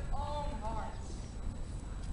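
A voice calls out for under a second at the start, over a steady low rumble.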